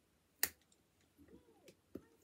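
A single sharp plastic click about half a second in, from a drink bottle's cap being opened, then faint handling sounds and a second small click near the end.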